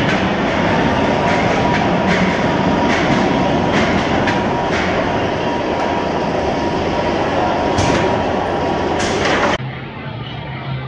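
Bolliger & Mabillard inverted coaster train rolling into the station on the overhead track: a steady rumble with a thin whine and irregular clicks and clunks. The sound cuts off sharply near the end.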